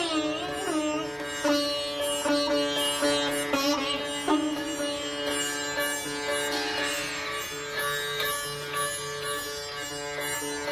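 Sitar played solo: a phrase of gliding, bent notes in the first second, then single plucked notes, each ringing on before the next.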